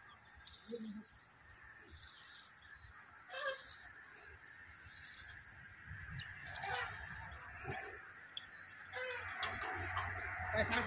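Faint honking calls of farm fowl, heard a few times. Between them come short bursts of high hiss, recurring about every one and a half seconds.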